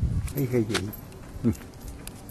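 A person calling "hey" to a dog, with a few light metallic clinks.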